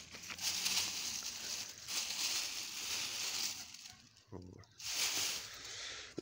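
Dried birch leaves rustling as a hand rummages through bunches of dried birch branches, easing off briefly about four seconds in.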